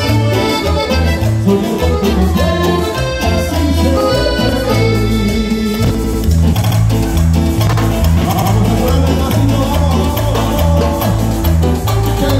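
A live dance band playing a lively tune, with a melody line over a pulsing bass beat that keeps going without a break.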